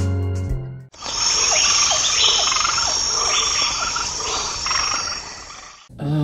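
Night ambience of crickets and frogs: a steady high insect trill with short calls repeating every half second or so, fading out near the end. It comes in right after a music chord cuts off about a second in.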